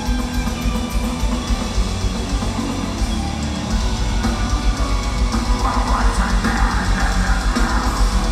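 Melodic death metal band playing live: distorted electric guitars over rapid, driving kick drums, with a brighter guitar line coming in over the midrange in the second half.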